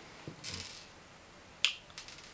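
Small objects handled on a desk: a brief rustle about half a second in, then one sharp click.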